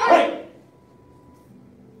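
Martial arts students shouting a sharp "Hey!" together as they throw a front punch on the count, one loud shout right at the start lasting about half a second.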